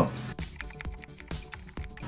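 Keypad buttons of a Wandi G2000 portable gas detector being pressed in quick succession to step through its menu, a run of small clicks. Quiet background music underneath.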